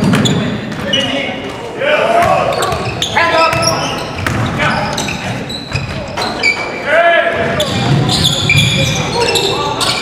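Live basketball game sounds echoing in a large gym: a ball bouncing on the hardwood floor and players' footsteps, with voices calling out. The loudest calls come about two seconds in and again near seven seconds.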